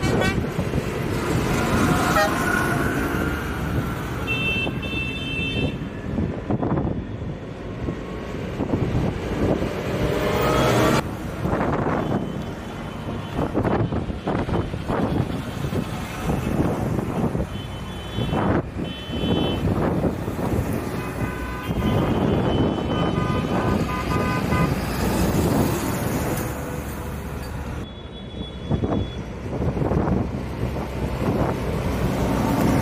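Farm tractors driving past in a convoy, their diesel engines running loudly, with vehicle horns tooting in several spells, some short and some held for a few seconds.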